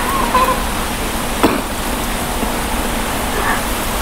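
Steady, even background hiss, with a faint brief voice just after the start and a single sharp click about a second and a half in.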